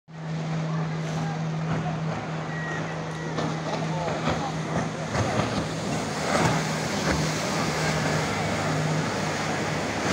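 Churning river water rushing and splashing in the wake of a passing motorboat, with the boat's engine humming steadily and people chattering along the bank.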